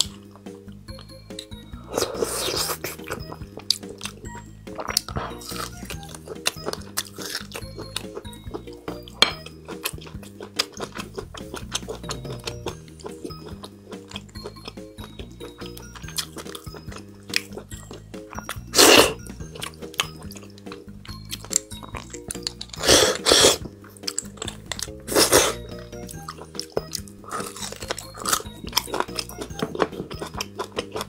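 Soft background music, with close-up eating sounds of a person working on beef bone marrow: many small wet clicks and smacks, and four louder slurps as marrow is sucked from the bone, the first a few seconds in and three more in the last third.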